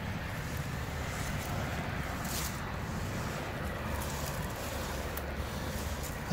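Wind on the microphone: a steady low rumble with an even hiss, no distinct strokes.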